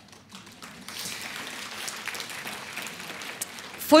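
Audience applauding: many hands clapping at once, swelling in about a second in and holding steady until a woman's voice resumes at the very end.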